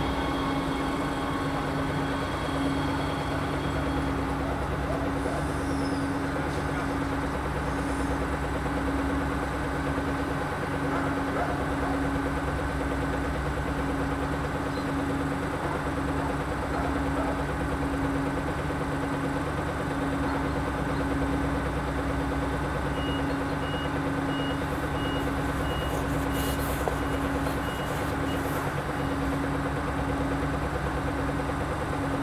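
Stadler GTW diesel multiple unit's engine running steadily at idle as the train stands at the station, a low hum with a slightly pulsing tone. Near the end a high beeping sounds about twice a second for several seconds, with a short hiss of air among it.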